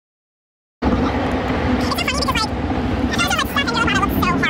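Steady road and engine noise inside a moving car's cabin, cutting in suddenly about a second in after silence, with women's voices talking over it twice.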